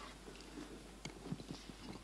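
Faint room noise of a large hall with scattered short knocks and shuffling, a few louder knocks about a second in: people moving about, footsteps and shifting in seats.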